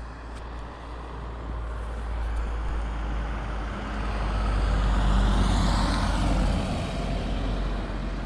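A road vehicle passing, its engine and tyre noise swelling to a peak about five to six seconds in and then easing off, over a low rumble.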